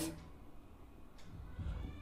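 Quiet room tone in a pause between spoken phrases, with a faint, brief high-pitched sound about one and a half seconds in.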